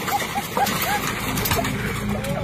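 Steady rush of air and dust blowing out of a drilling rig's well, with a low machine hum, under a quick run of short high-pitched yelps, about five a second, in the first second.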